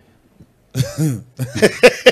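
A person coughing and clearing their throat, a quick run of several coughs that starts just under a second in after a brief silence.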